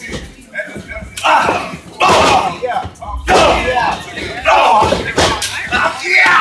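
Spectators shouting and yelling in repeated loud outbursts, with a few sharp thuds from the wrestling ring.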